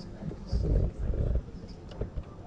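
Indistinct murmur of many people talking quietly in pairs around a room, with a louder low rumble from about half a second in that lasts most of a second.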